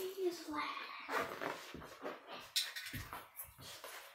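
A faint, indistinct voice with a few short knocks and rustles.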